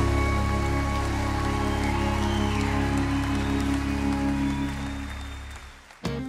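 A live country band's final chord held and ringing out under audience applause, slowly fading and dying away just before the end.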